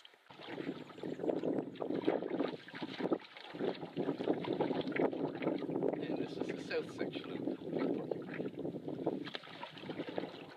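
Wind gusting across the microphone with water lapping and splashing at the hull of a canoe being paddled over choppy water, an uneven rushing noise with a brief lull about three and a half seconds in.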